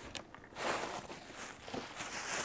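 Packaging being handled: a few light knocks, then from about half a second in a steady rustling as hands rummage in a cardboard shipping box and pull out a plastic bag.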